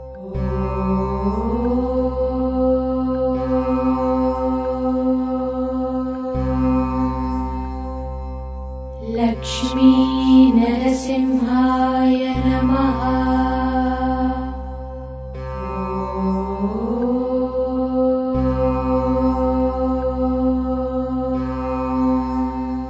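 Devotional mantra chant set to music: long held sung notes that glide upward into each phrase over a steady drone, the phrases repeating about every six seconds, with a brighter, busier passage around ten seconds in.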